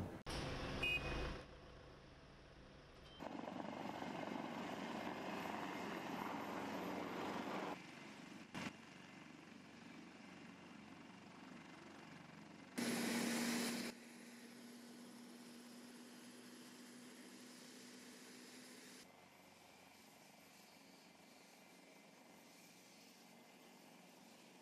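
Faint vehicle and machinery sound over several cuts: a steady rushing noise for a few seconds, then about halfway through a short louder burst with a steady hum from an AW189 helicopter running with its rotors turning. The hum fades over the next few seconds to a low hiss.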